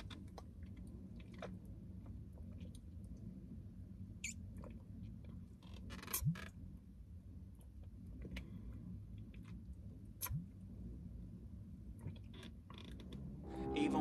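Faint swallowing and gulping as oat porridge is drunk from a sports bottle, with two louder swallows about six and ten seconds in, over a low steady hum.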